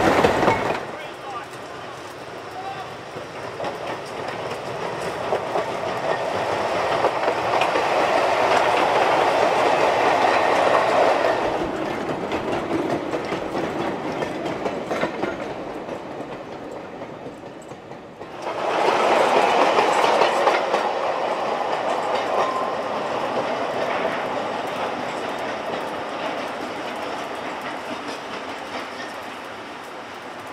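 Gravity slate train of unpowered wagons coasting downhill with no locomotive, its wheels rattling and banging over the rail joints. The noise builds as the wagons roll past and then fades. A second spell of rattling starts suddenly about two-thirds of the way through and dies away.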